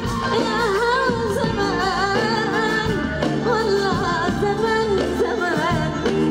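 A woman singing an ornamented Arabic pop melody live into a microphone, her voice wavering through quick runs over band accompaniment.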